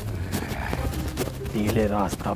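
Hooves clopping at a brisk, uneven pace, about five knocks a second, with a voice over them in the second half.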